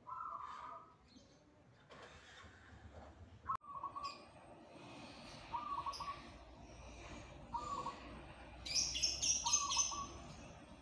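Zebra dove (perkutut) cooing in short repeated phrases, about one every two seconds. A click comes about a third of the way in. Near the end, another bird's high chirps come in, louder than the cooing.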